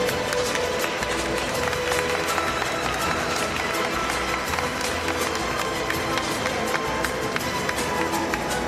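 Music for a figure skating free skate, played over the rink's sound system, with held notes and sharp ticks throughout.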